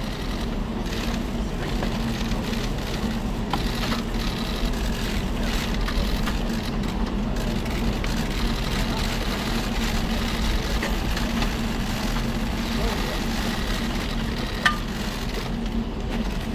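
Steady outdoor background hum with indistinct murmuring voices, and one sharp click near the end.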